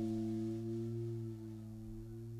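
A held electric guitar chord ringing out after the band's last hit, a steady low tone that slowly dies away.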